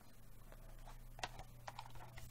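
Faint clicks and light knocks of a plastic DVD case and its cardboard slipcover being handled, the cover sliding off the case, with several small clicks in the second half.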